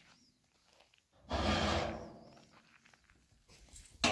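One scraping knock about a second long, from an empty rusty metal drum being shifted on stony ground, fading out.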